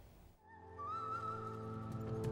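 TV news segment jingle fading in about half a second in: held chords under a high melody line that slides in pitch.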